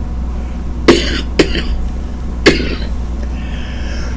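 A man coughing three short times, the first two close together and the third about a second later, while smoking a blunt. A steady low hum runs underneath.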